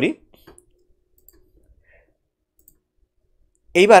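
A few faint, scattered clicks in an otherwise quiet pause, with speech at the start and near the end.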